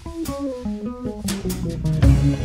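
Swing-blues band recording in a sparse instrumental break: a guitar plays a short line of single notes over bass, softer than the full band, which comes back in right at the end.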